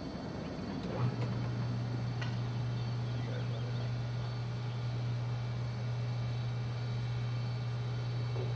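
Hydraulic power unit of a HySecurity SwingRiser gate operator starting about a second in and running with a steady low hum as it drives the swing gates open.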